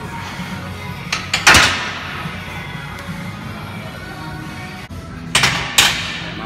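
Background music playing, cut through by two clusters of loud clanks of barbell weights, about one and a half seconds in and again near the end.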